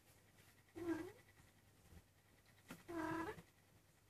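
Maine Coon cat meowing twice, two short, quiet calls about two seconds apart.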